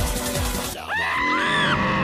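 Song music with a steady beat stops just under a second in, giving way to a long cartoon polar bear roar mixed with screaming.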